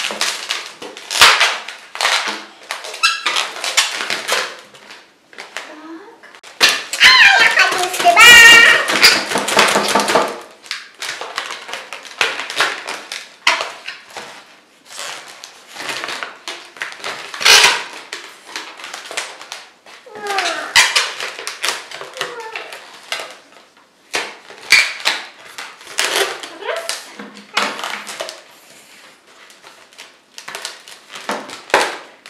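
Latex modelling balloons being twisted and handled, the rubber squeaking and rubbing in short spells, with a loud wavering squeal from about seven to ten seconds in.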